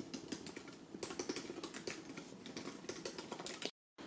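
A pen scratching and tapping on paper in quick, irregular short strokes as boxes on a printed checklist are marked off. The sound cuts off abruptly just before the end.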